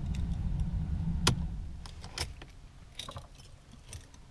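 Keys on a metal keyring jangling as the ignition key of a Mercedes C-Class (W204) is turned off, with a sharp click about a second in and a few lighter clicks after. A low hum underneath fades away over the first two seconds.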